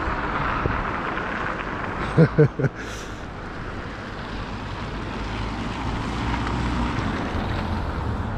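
Road traffic on a wet road: the hiss of car tyres on wet tarmac, then a low vehicle rumble that swells about five to seven seconds in. A brief voice sound comes about two seconds in.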